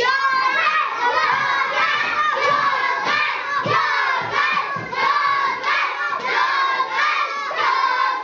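Many young children shouting excitedly all at once in a classroom, a loud, unbroken din of overlapping voices.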